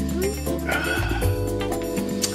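Background music with steady sustained tones, with a brief wavering high-pitched sound just under a second in.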